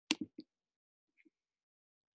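Three quick sharp clicks of a computer mouse in close succession, then a faint tick about a second later, as the chart's replay controls are worked.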